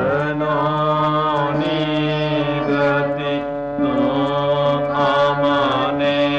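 Devotional Indian song: a voice sings long held notes that slide up and down between pitches, over a steady drone.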